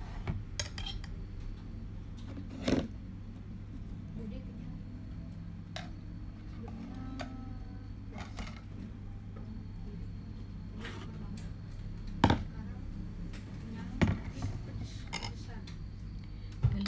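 Dishes and eating utensils being handled, with three sharp clinks or knocks about 3, 12 and 14 seconds in, over a steady low hum and faint voices.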